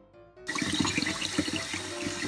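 Kitchen tap water running and splashing onto a plastic food container and into a bowl of water in a stainless steel sink, starting about half a second in.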